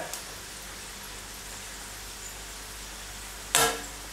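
Crostoli pastry deep-frying in hot vegetable oil in an electric frypan: a steady, even sizzle. A short sharp sound breaks in about three and a half seconds in.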